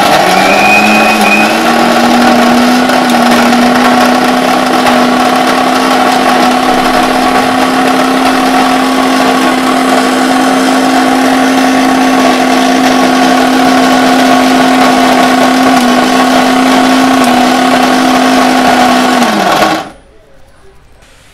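Electric kitchen mixer grinder running, its steel jar grinding thick peanut paste. It starts abruptly, rises a little in pitch over the first couple of seconds as the motor spins up, runs steadily, then winds down as it is switched off just before the end.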